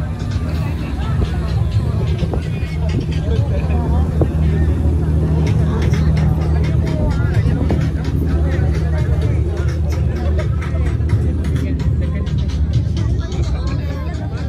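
Steady low drone of a cruise boat's engine, with music and people's voices on board over it.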